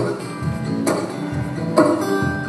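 Acoustic guitar strummed in a live song, a chord struck about once a second and left ringing between strokes.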